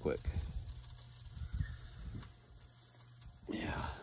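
Low rumble of wind buffeting the microphone outdoors, with a few faint clicks.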